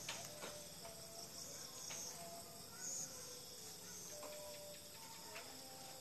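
Faint background with insects chirping and a few light ticks.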